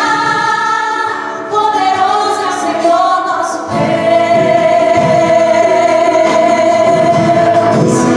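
A group of women singing a gospel worship song together into microphones, with light accompaniment at first; about halfway through, a fuller low accompaniment comes in under one long held note.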